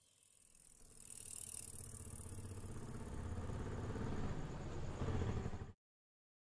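Bicycle rattling and clattering as it is ridden over a rough wet lane. It grows steadily louder, then cuts off suddenly near the end.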